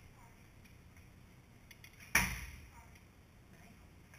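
A single bow shot about two seconds in: a sharp string snap on release that dies away over about half a second.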